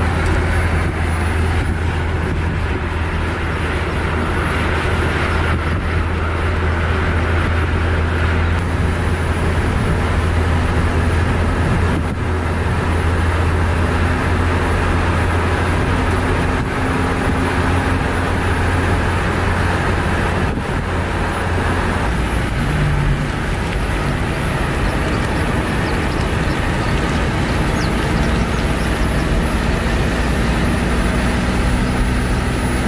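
A car driving at speed on a paved road, with steady road and tyre noise and a low hum underneath. The hum shifts about two-thirds of the way through.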